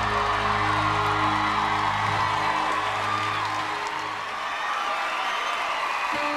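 Live band music ending: held notes die away about four seconds in, over a cheering crowd.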